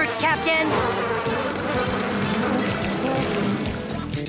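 Cartoon sound effect of a swarm of bees buzzing, thick and steady.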